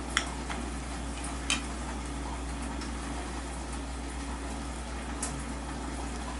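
Knife and fork clicking lightly against a ceramic plate three times while chicken steak is cut, over a steady low hum and faint hiss.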